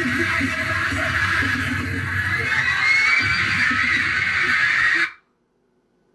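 Concert footage playing back: music under a screaming crowd, which cuts off suddenly about five seconds in as the playback is paused.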